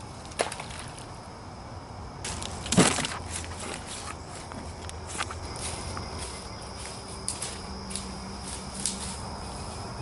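Footsteps crunching through dry leaf litter and sticks in the woods, an uneven run of crackles and snaps starting about two seconds in, with the loudest crunch about three seconds in.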